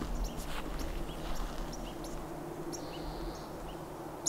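Outdoor forest ambience: scattered short bird chirps, with one briefly held higher note about three seconds in, over a low steady rumble.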